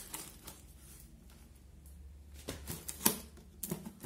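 A few scattered short taps and rustles from a cardboard parcel and scissors being handled, with a quiet stretch in the middle; the sharpest tap comes about three seconds in.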